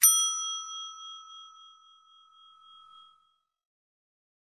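A single bell-ding sound effect for a clicked notification-bell icon. It is struck once and rings with several clear tones, fading away over about three seconds.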